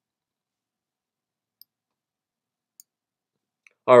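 Three faint, single computer mouse clicks, each a second or so apart, in otherwise near silence.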